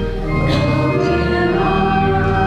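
Church music: sustained organ chords with choir singing a hymn, the chord changing about half a second in.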